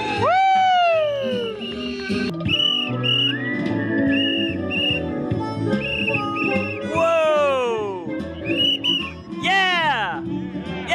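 Comic show music with slide-whistle effects: a long falling whistle glide just after the start and again about seven seconds in, then two quick rise-and-fall whistles near the end. Between them come short, high repeated toots over a steady backing track.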